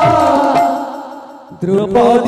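Live kirtan music: a singing voice with sustained pitched tones and drum strokes. It fades down about halfway through, then breaks back in suddenly near the end.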